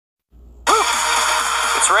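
A person's short voiced exclamation, the on-screen "Phew", over a steady background hiss that cuts in suddenly; speech begins at the very end.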